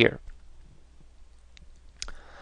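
A few faint small clicks over quiet room tone, with a sharper click at the very end.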